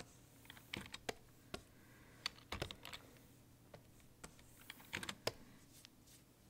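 Faint, irregular clicking of computer keys being pressed one at a time and in short clusters, as in keyboard shortcuts during digital drawing work.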